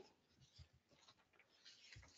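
Near silence: a pause with faint room tone and a few soft, faint ticks.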